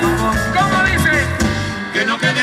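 Live salsa band playing an instrumental stretch, with horns over a steady bass and Latin percussion.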